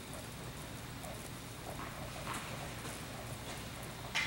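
Faint, irregular footsteps of a tennis player walking on an indoor hard court, over a steady low hum of the hall.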